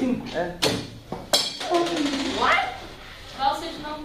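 Students talking in a classroom, with two sharp knocks, one about half a second in and a louder one about a second and a half in.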